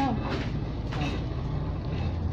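A steady low hum, with a word spoken at the very start and a brief voice fragment about a second in.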